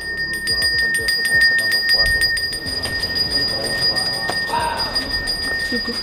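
Balinese priest's hand bell (genta) ringing continuously in rapid, even strokes, holding a steady high ring, with voices underneath.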